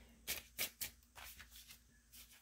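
Faint clicks and taps of tarot cards being handled, about half a dozen in the first second and a half.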